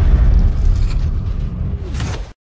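Cinematic intro sound effect: the deep rumble of a boom fading away, with a brief whoosh near the end.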